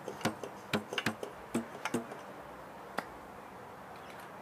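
Selmer Chorus 80J trumpet's Monel piston valves being worked by hand, making a quick run of clicks and short pops, with one more click about three seconds in. The valves are tight-fitting, with great compression.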